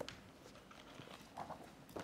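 Faint handling of a bundle of paper documents at a lectern: a few soft knocks and rustles as pages are shifted and turned.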